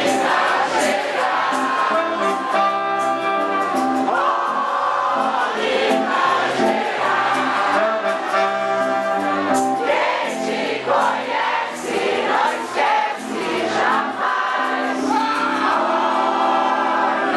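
Live band music after a four-count start, with a stepping bass line and many voices singing together.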